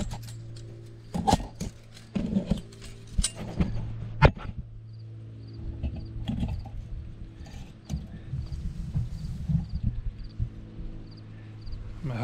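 Handling noises as fence wire is worked through cedar branches: rustling with several sharp clicks and knocks in the first four seconds, over a steady low hum. A faint high chirp repeats about three times a second through the second half.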